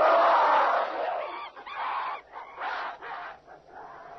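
Man-ape shrieking: one long loud screech, then three or four shorter cries, each fainter than the last.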